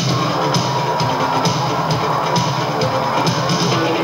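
Live band playing, with a drum kit keeping a steady beat.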